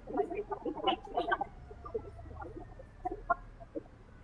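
Faint, off-microphone talk in a large hall: short, broken snatches of voice, busiest in the first second and a half, then sparse.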